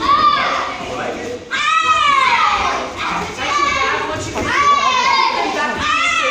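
Children's high-pitched shouts, about five in a row, each rising and then falling in pitch.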